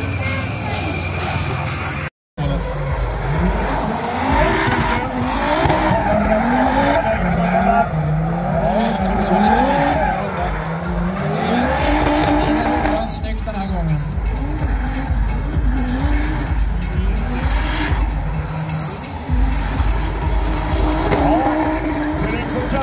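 Drift car's engine revving up and down over and over as it slides, with tyres squealing.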